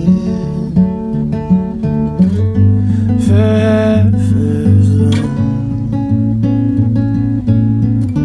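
Steel-string acoustic guitar playing an instrumental passage of picked notes, with low bass notes ringing in about two seconds in.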